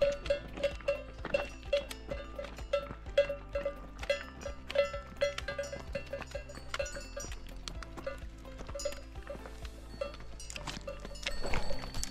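Bells worn by grazing sheep clanking irregularly, about two or three strikes a second, thinning out after about nine seconds.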